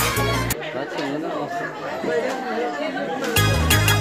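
Dance music with a steady beat that drops out about half a second in, leaving people chattering, then comes back near the end.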